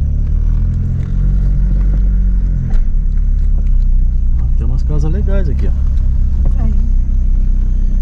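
A car's engine running and its tyres rumbling over an unpaved track, heard from inside the cabin as a steady low drone, with one sharp knock about a third of the way in.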